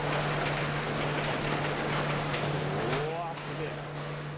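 Seismic shake-table test running: continuous rumbling noise with irregular knocks and rattles from the test rig and a 900 kg server rack on seismic-isolation feet, over a steady hum. The shaking noise eases about three seconds in.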